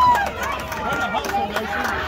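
Indistinct calls and shouts from spectators and players around a youth baseball diamond, overlapping, with one drawn-out call right at the start.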